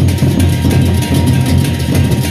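Gendang beleq ensemble playing: large Sasak barrel drums and clashing hand cymbals in a loud, dense, continuous rhythm.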